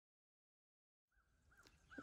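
Near silence: the track is dead for about the first second, then a faint outdoor background comes in, carrying a few short, faint chirps.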